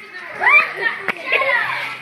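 Children's voices shouting in high-pitched calls that rise and fall, with no clear words. There is a sharp click about a second in.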